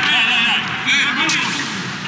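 Spectators cheering and calling out in high-pitched voices in a sports hall, with a quick swoosh as a broadcast replay graphic wipes across the picture.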